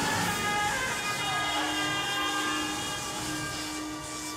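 Film soundtrack: orchestral score holding long sustained chords, with a short falling glide in pitch a little after a second in.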